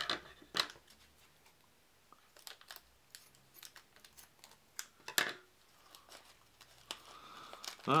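Small plastic bag of game pegs crinkling as it is handled and cut open, a scatter of short crackles and clicks, the sharpest about half a second in and about five seconds in.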